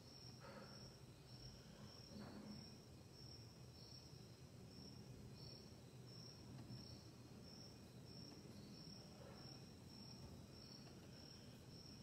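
Near silence: room tone with a faint cricket chirping steadily in a high pitch, about two chirps a second.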